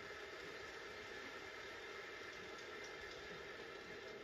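Low, steady, even background noise of a televised ballpark's crowd ambience, heard through a TV speaker.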